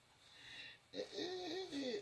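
A woman's quiet wordless vocalizing, like a soft hum or chuckle, starting about a second in, its pitch rising and falling in several small arcs.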